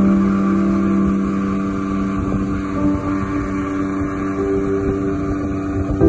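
Outboard motor of a speedboat running steadily at cruising speed, with a steady hum and the rush of the hull and wake on the water.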